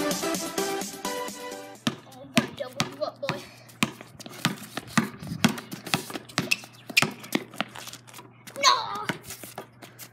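Electronic music ends about two seconds in. Then a basketball is dribbled on concrete, sharp irregular bounces about two a second, with a brief child's voice near the end.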